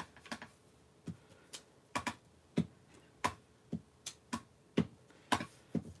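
Clear acrylic stamp block tapped repeatedly on an ink pad and pressed onto cardstock on the table: a series of short, sharp taps, about two a second.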